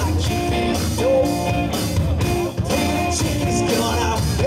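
Live blues-rock band playing an instrumental passage on electric guitars and drum kit, a lead line of held and bent notes over the rhythm.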